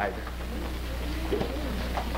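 Faint low voices muttering over the steady hiss and low hum of an old television soundtrack.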